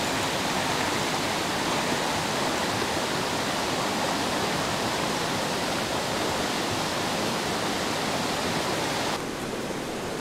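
River water running over rocks: a steady rush of flowing water. About nine seconds in it drops suddenly to a quieter, duller rush.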